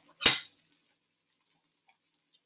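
A single short clack from a spatula being handled at an electric griddle, about a quarter second in, followed by a faint tick.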